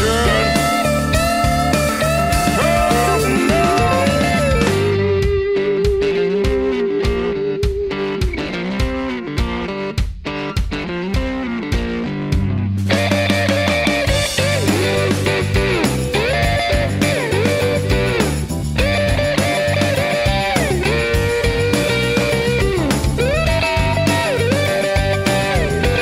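Instrumental break in a blues-rock song: an electric guitar lead with bent notes over the band. About five seconds in the backing thins out under a long held, wavering note and sparse hits, and the full band comes back in around thirteen seconds.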